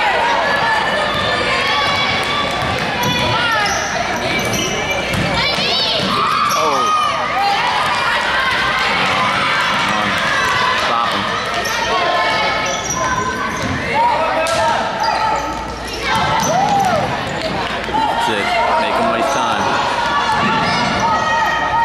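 Basketball game sounds in a gymnasium: a ball being dribbled on the hardwood court and sneakers squeaking in short rising and falling chirps, under spectators' chatter.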